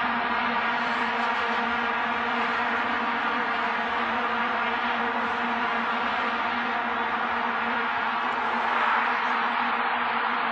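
Stadium crowd droning on vuvuzelas: a steady, unbroken blare on one pitch with its overtones, over general crowd noise, swelling a little near the end.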